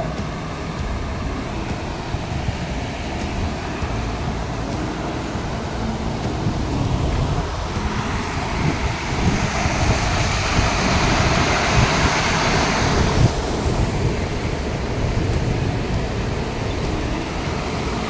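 Swollen, muddy floodwater rushing fast past a damaged culvert, with wind buffeting the microphone. The rush of the water grows louder and hissier for a few seconds in the middle.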